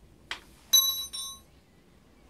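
A short knock, then a bright metallic clink that rings with several clear high tones, struck twice in quick succession: a metal tool or engine part knocked against metal.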